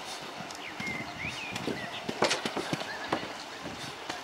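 Montaz Mautino basket lift at its station: irregular clicks and knocks as a group of baskets moves slowly through, the loudest knock about two seconds in. A couple of short squeaky gliding chirps come about a second in.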